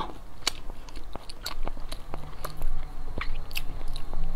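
Biting and chewing a low-fat multigrain bread roll topped with oats and seeds: irregular soft crunches and mouth clicks.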